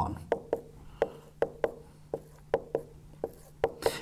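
Marker pen writing numbers on a whiteboard: a quick series of short sharp taps and strokes as each figure is written.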